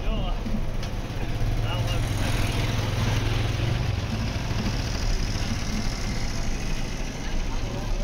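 Busy street market ambience: people talking all around, over a steady low engine hum that is strongest in the first half.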